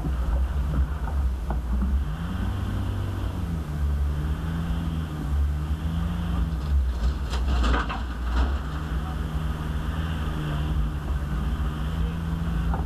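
Turbo-diesel engine of an Isuzu D-Max V-Cross pickup running at low revs as it crawls along a rough, rocky track, heard from inside the cab. The engine pitch drifts up and down a little. A cluster of knocks and rattles comes about seven to eight seconds in.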